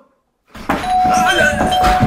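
Doorbell chime ringing as a steady held tone, starting just under a second in, with the bell being rung again and again.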